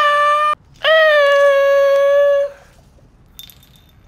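A person's voice giving two loud held cries on one steady pitch, a short one, then a longer one of nearly two seconds.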